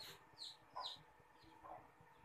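A few faint, short animal calls over a very quiet background, spaced through the two seconds.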